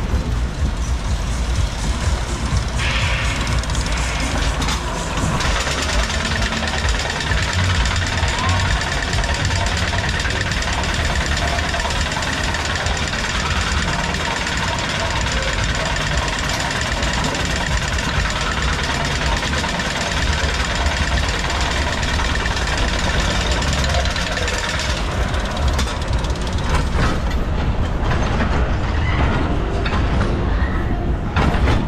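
Onride sound of a Reverchon steel roller coaster car rolling on its track with a steady low rumble. From about five seconds in a denser, steady mechanical noise runs while the car is hauled up the lift hill, ending near the end as the car reaches the top. Funfair music plays underneath.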